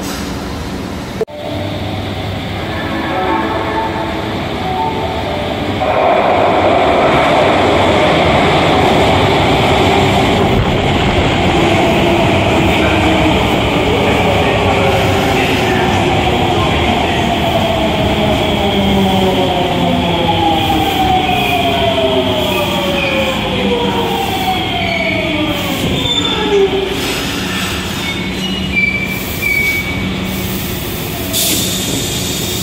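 Osaka Metro subway train running alongside the platform: rumbling noise with an electric motor whine that glides down in pitch over several seconds as the train slows.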